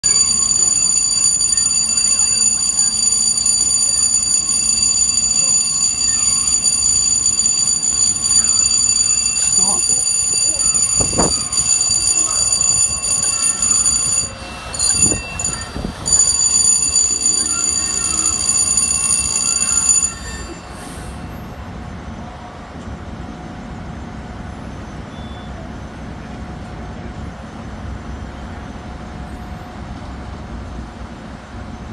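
Firehouse apparatus-bay door warning alarm sounding as a steady high-pitched tone; it stops about two-thirds of the way through. A few sharp knocks come in the middle, and quieter steady street noise follows.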